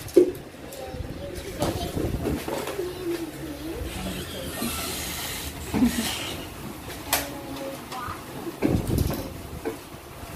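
Hard plastic toy-garage parts being handled and fitted together, with a few sharp clicks and knocks and some rustling, while voices murmur faintly.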